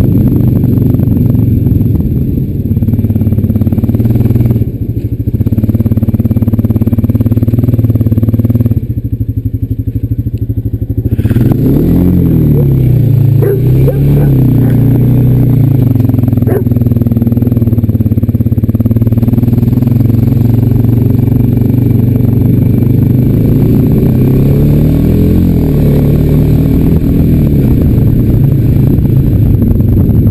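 Honda Rancher 420 ATV's single-cylinder four-stroke engine running under way. Its note drops and quietens briefly about nine seconds in, then rises and falls with the throttle a few seconds later and again near 25 seconds.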